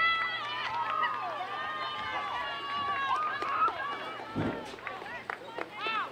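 Soccer players shouting and calling to one another across the field, several voices overlapping, with one long held call in the first few seconds. A single dull low thump comes about four and a half seconds in.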